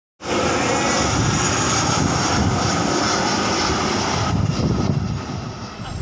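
Jet airliner, a twin-engine Boeing 737, passing low overhead on approach with its landing gear down, its engines a loud steady rush. The sound dulls after about four seconds and fades away as the plane moves off.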